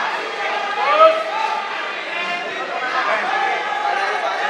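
Spectators chattering in a football stadium stand, many voices overlapping without clear words, with one louder voice calling out about a second in.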